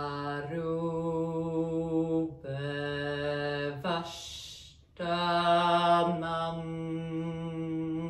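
A woman chanting a Sanskrit mantra in long, held notes on a steady low pitch, in three phrases with a short break about four seconds in.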